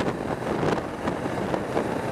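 A 1987 Suzuki GSX-R 750 being ridden at steady speed, its engine running under a steady rush of wind across the helmet-mounted microphone.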